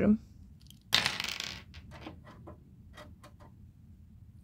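Small plastic toy eggs clatter briefly about a second in. A run of about seven light plastic clicks follows as they are set onto the door shelf of a toy refrigerator.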